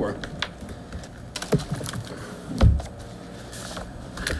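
Scattered clicks and light knocks of a man settling in at a table, as he sits down and handles things on it, with one heavier low thump a little past halfway.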